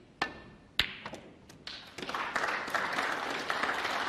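Snooker cue tip striking the cue ball, then a sharper click of ball striking ball and a few lighter knocks. Audience applause starts about two seconds in.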